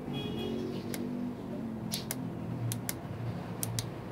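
Push buttons on a digital temperature controller being pressed while its settings are stepped through: a series of short sharp clicks, several in quick pairs.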